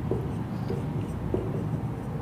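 Marker pen writing on a whiteboard in a few short strokes as a diagram is drawn.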